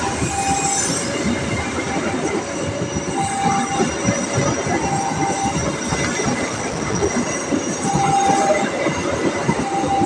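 Passenger train coaches rolling past close by: a steady rumble and clatter of wheels on rail. Short, high wheel squeals come at intervals, as the train runs through a curve.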